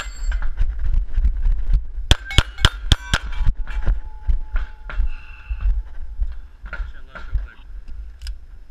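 Pistol shots with steel targets ringing on each hit: one shot at the start, then a fast string of about five shots between two and three seconds in. Fainter knocks and a thin ringing follow.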